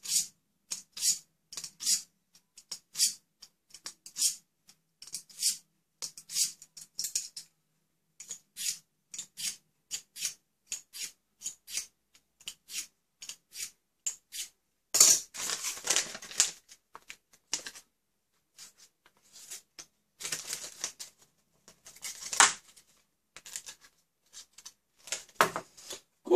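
Blade of a cheap multitool drawn repeatedly through a small handheld knife sharpener: short scraping strokes about two a second, with a few longer, louder strokes in the second half.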